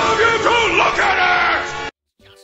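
A voice yelling loudly in long, wavering, pitch-bending cries that cut off suddenly near the end.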